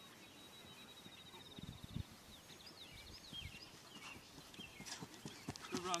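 Faint outdoor ambience: a high steady trill, then a run of short sliding chirps typical of small songbirds, with a few dull low thuds in between.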